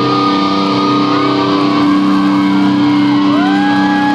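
Live electric guitar through an amplifier, holding one long sustained note at the end of a solo. The crowd starts screaming near the end.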